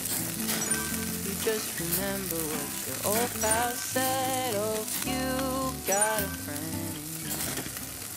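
Meat sizzling on a grill over charcoal, a steady frying hiss, under background music with a melody of held and gliding notes.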